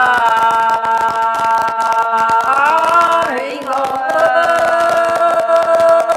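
A man singing a Tày–Nùng heo phửn folk song, holding long notes with slides in pitch between them.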